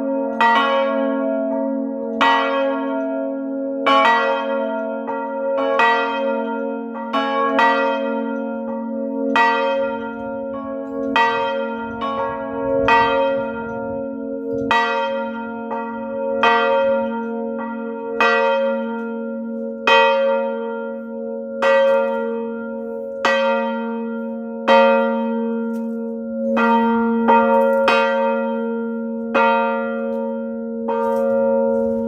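Two 1952 Van Bergen (Heiligerlee) swinging church bells, strike notes B-flat and D-flat, hung in an open wooden bell frame and rung by hand with ropes, sounding together. Their clappers strike in an uneven, interleaved rhythm of about one to two strokes a second, each stroke ringing on under the next.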